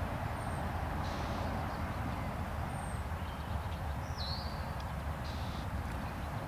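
Outdoor ambience: a steady low background rumble, with a few faint, short bird chirps scattered through it.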